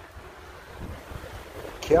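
Wind noise: a steady rumbling hiss of gusting wind on the microphone, with a word of speech coming in near the end.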